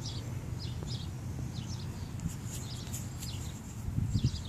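Small birds chirping in the background, short high calls repeated every half second or so, over a steady low rumble.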